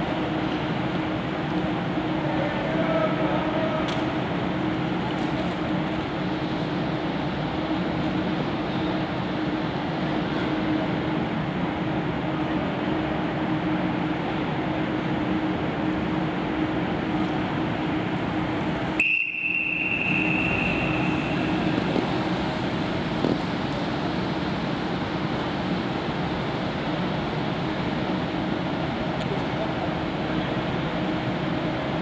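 Steady indoor velodrome ambience during a track race: a constant hum under a haze of crowd murmur and faint voices. About nineteen seconds in, the sound cuts out for a moment, then a high steady tone sounds for about two seconds.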